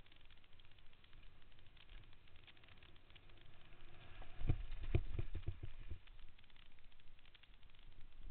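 Mountain bike rolling fast down a trail, its tyres and frame clattering over the surface with many small clicks and rattles, and a run of heavier knocks and rumble about halfway through as it goes over rougher ground.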